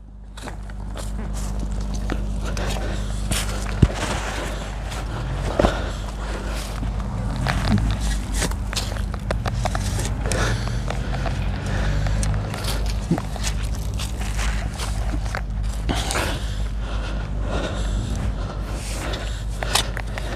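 A shovel blade pushed into mulch and soil around a plant clump, cutting through the roots: scattered scrapes and crunches, over a steady low rumble.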